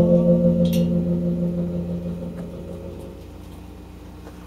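A live rock band's closing chord, guitar and bowed strings held on several steady notes, ringing out and fading away gradually as the song ends.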